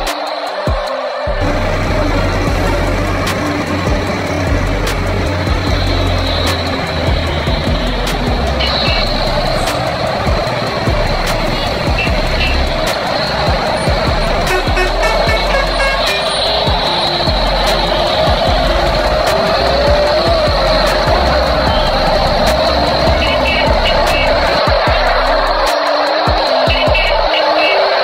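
Background music with a steady truck engine sound effect running under it, a deep rumble coming in about a second in.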